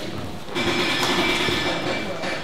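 Music comes in about half a second in, with steady held notes.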